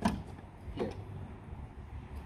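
A single sharp metal clack as the end of a strut tower brace is set down onto the car's strut tower, over a steady low background rumble.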